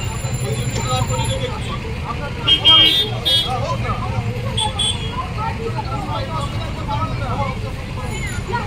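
Street traffic jam: engines idling under a crowd of many voices, from people arguing after a collision between a car and a scooter. A vehicle horn honks loudly about two and a half seconds in, holding for about a second, and sounds again briefly a little later.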